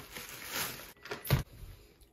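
Clear plastic wrapping rustling and crinkling as it is pulled off a hard trumpet case, with a single loud thump a little over a second in.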